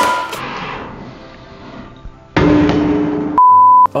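A sharp clang that rings and fades over about two seconds, then about a second of hum, then a short, loud, steady beep just before speech resumes.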